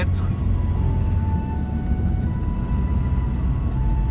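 Steady low rumble of road and engine noise inside the cabin of a moving Mercedes-Benz car.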